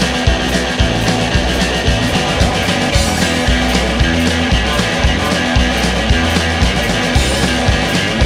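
Live rock band playing a passage without vocals: a drum kit keeps a steady beat under sustained electric bass notes and the rest of the band.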